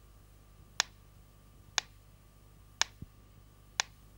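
Pyramid-shaped mechanical pendulum metronome ticking at an even beat, about one sharp tick a second, over a faint steady hum.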